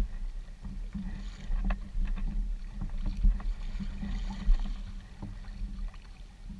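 Kayak paddle strokes dipping and splashing alongside a Jackson Kraken 13.5 fishing kayak under way, over a steady low rumble. Two sharp knocks, about three and four and a half seconds in, are the loudest sounds.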